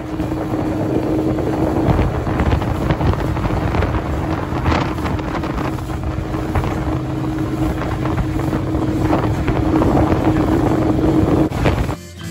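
Small motorboat underway: its engine hums steadily beneath heavy, gusting wind noise on the microphone.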